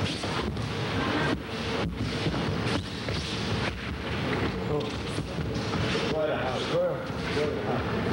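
Steady noisy hall background from an old camcorder microphone, with indistinct chatter from the spectators. One voice stands out briefly about six to seven seconds in.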